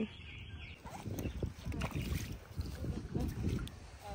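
Irregular low rumbling shoreline noise from wind and shallow water, with no steady tone.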